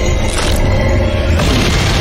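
Film sound mix of deep booming impacts and low rumble over a dramatic music score. There is a sharp hit about half a second in and another near one and a half seconds in.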